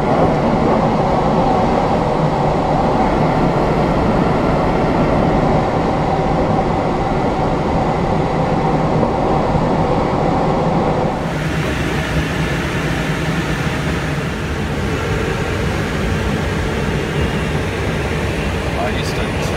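Steady rushing airflow noise in an engineless glider's cockpit during its landing approach. About eleven seconds in it changes abruptly to a different, hissier steady noise.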